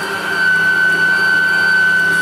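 Zelmer ZMM1294SRU electric meat grinder running with a steady high motor whine as it minces chicken fillet and fatty pork through the coarse plate.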